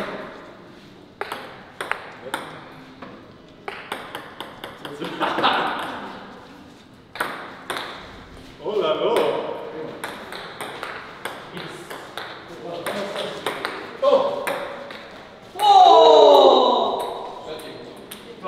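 Table tennis rally: the ball clicks again and again off the paddles and the table. Players' shouts come between the hits, the loudest a long shout falling in pitch near the end.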